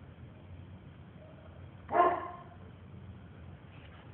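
A dog barks once, short and loud, about halfway through, over faint steady background noise.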